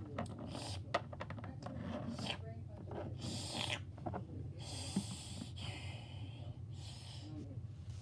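A child making drinking noises with her mouth for a toy dog lapping water: a run of quick clicks, then several breathy, snorting slurps.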